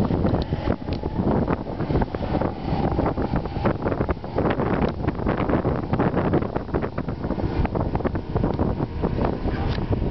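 Wind buffeting the phone's microphone, a continuous gusty rumble.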